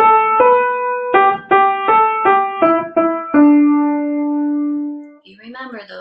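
Piano playing a short single-line melody: about nine notes, one at a time, stepping mostly downward and ending on a long held low note that fades out about five seconds in. A woman starts speaking right at the end.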